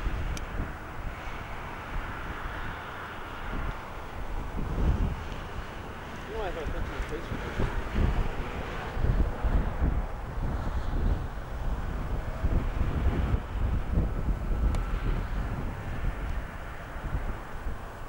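Wind buffeting a camcorder microphone in irregular gusts, over a steady outdoor hiss.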